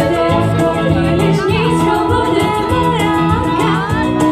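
Live band playing a song: a singer's voice over electric guitar, bass guitar and keyboard, with steady bass notes and a regular percussion beat.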